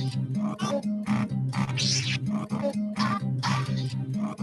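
A live DJ mix of electronic music: a steady beat of about two hits a second over a repeating bass line.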